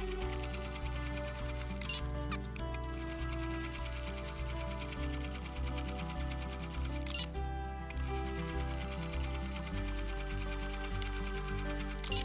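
A Brother Innovis computerized sewing machine running steadily at speed under background music. It is free-motion stitching with the feed dogs lowered and stops briefly twice, about two seconds in and again past seven seconds.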